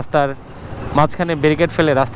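Speech: a voice narrating in Bengali, with a short pause about half a second in where only a low, steady hiss is heard.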